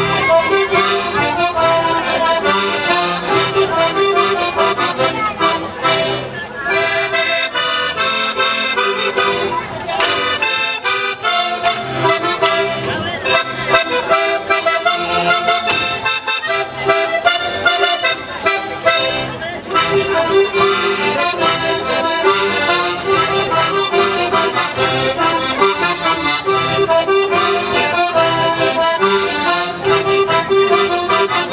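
Live Alsatian folk dance music led by an accordion, played by a band in a steady, even rhythm.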